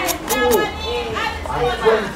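Indistinct high-pitched voices, like children's, talking.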